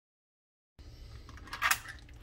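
Dead silence for most of the first second, then indoor room tone with a low hum, small clicks and a short burst of handling noise about a second and a half in.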